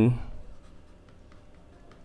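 Faint scratching of a stylus writing by hand on a pen tablet, after a spoken word trails off at the start.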